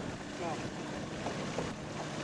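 Small tiller-steered outboard motor running steadily as an aluminium fishing boat moves along, with water wash and wind on the microphone.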